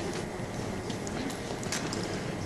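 Steady room noise with scattered light clicks and knocks, a few in quick succession in the second half.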